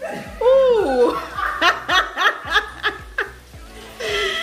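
A person laughing: one rising-and-falling vocal whoop, then a quick string of about eight short 'ha' bursts.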